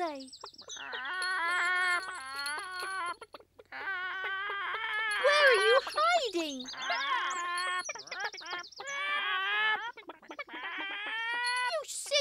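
Hens cackling and squawking in a run of wavering calls, in stretches of a second or two with short breaks between them.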